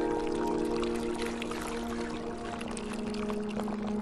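Soft background music with sustained chords, over the sound of a thick sauce being poured onto braised abalone.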